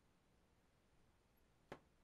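Near silence: room tone, with a single short sharp click near the end.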